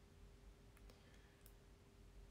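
Near silence: faint room tone with a steady low hum and a few faint clicks about a second in.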